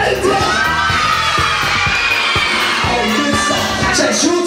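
A crowd of children shouting and cheering over music with a beat.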